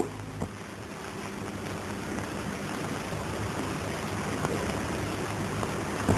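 A steady rushing hiss that slowly grows louder, without tone or rhythm.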